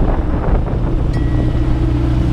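AutoGyro MTOsport autogyro's engine running steadily at low taxi power, heard from the cockpit with wind buffeting the microphone.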